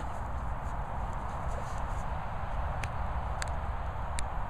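Hungarian Vizsla pawing and scuffing at loose soil, with two sharp clicks about three seconds in, over a steady rumble of wind on the microphone.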